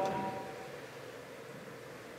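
A man's voice ends right at the start and its echo dies away in a reverberant church within about half a second. After that there is only faint, steady room hiss.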